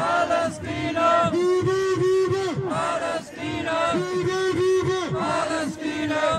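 A protest chant: a man shouts a slogan through a megaphone in repeated rhythmic phrases of about four beats each, with a crowd chanting along.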